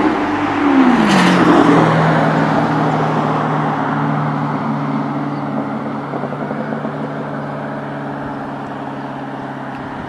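A motor vehicle passing close by on the street: its engine tone drops in pitch as it goes past about a second in, then fades slowly as it drives away.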